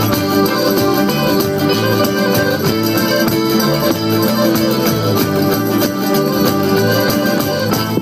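Live folk band playing a dance tune, with frame drums and electric bass under a steady beat. The music stops abruptly at the very end.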